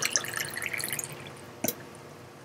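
Water poured from a plastic pitcher into a glass tails off into the last few drips and splashes. Near the end comes a single short knock.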